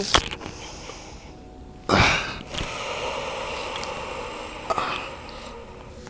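A person breathing close to a clip-on microphone: one long breath starts sharply about two seconds in and fades over about three seconds.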